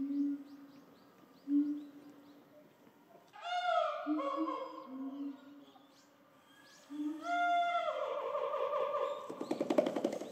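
A western lowland gorilla beating its chest near the end: a rapid run of sharp slaps lasting under a second. Before it, birds call, with low coos and two longer, louder calls.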